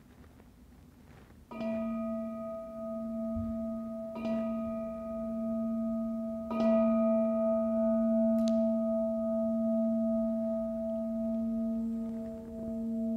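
Metal singing bowl struck with a mallet three times, about two and a half seconds apart, each strike adding to a long, wavering ring that carries on unbroken. The bowl is rung to close the meditation.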